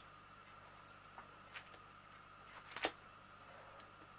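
A few faint taps and clicks from a diamond painting canvas being handled on a light pad, the sharpest almost three seconds in, over a faint steady hum.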